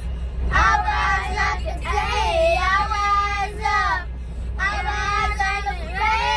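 Young girls singing along in sung phrases, with a short pause about four seconds in, over the steady low rumble of a vehicle's cabin.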